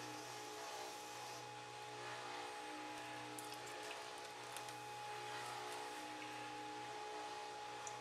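A faint steady hum, with a few faint light ticks in the middle as thin copper winding wires on a ceiling-fan stator are picked at by hand.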